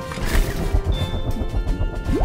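Background music over a low churning rumble: a cartoon sound effect of a small submarine's propeller blades spinning to chop free of tangled kelp.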